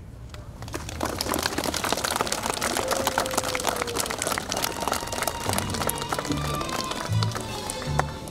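Crowd applauding. Music comes in about halfway through, with a pulsing low bass under a few held notes.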